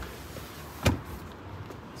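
A single sharp thump just under a second in: a Tesla Model Y's rear seatback folded down and landing flat in the cargo area. A steady low hiss of background noise runs underneath.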